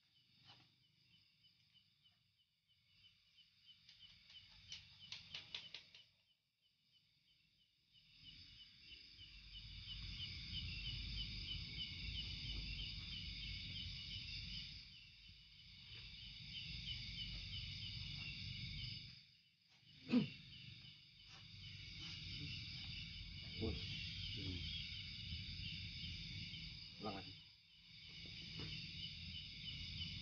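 Night insects, crickets or similar, chirping steadily in a fast pulsing trill. About eight seconds in, a low rumble joins them and carries on, with a few sharp knocks, the loudest about twenty seconds in.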